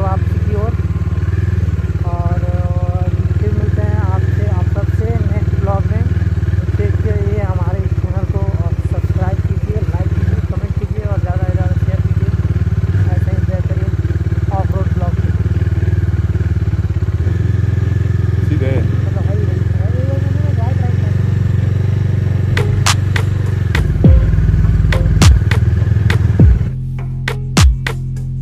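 Motorcycle engine running steadily while riding, with a person's voice talking over it. A few sharp knocks come near the end.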